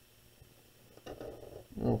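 Quiet room tone for about a second, then a man's voice, low at first and loudest near the end as he says 'okay'.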